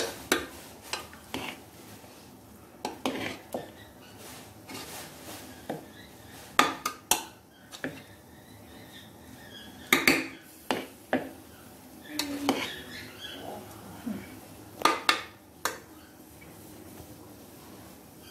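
A metal spoon stirring and fluffing cooked rice in an aluminium pressure cooker pot, clinking and scraping against the pot in irregular knocks, with louder clanks about seven, ten and fifteen seconds in.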